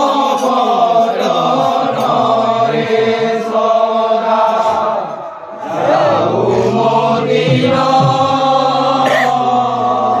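A group of men singing an Odia devotional sankirtan chant together, with sharp clinks of small hand cymbals now and then. The singing breaks off briefly about five seconds in, then resumes.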